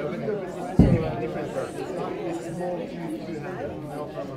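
Several people talking at once in small groups, a steady chatter of overlapping voices. A single low thump sounds just under a second in, the loudest moment.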